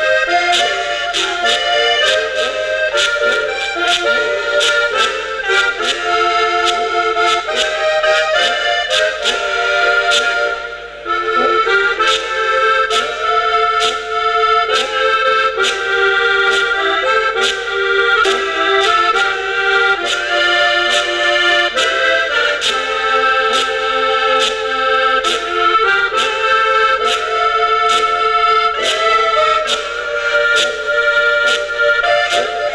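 Button accordion and folk horns, some wooden and some brass-belled, playing a traditional tune together, with a short break about eleven seconds in.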